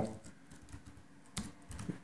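Faint keystrokes on a computer keyboard, a few scattered key clicks with one sharper click about one and a half seconds in.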